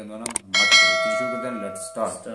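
A bell chime sound effect from a subscribe-and-notification-bell button animation. It strikes about half a second in and rings on, slowly fading, for about a second and a half.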